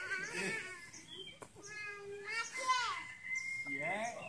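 A young child's high-pitched voice talking and calling out in short phrases, with a thin steady whistle-like tone in the last second or so.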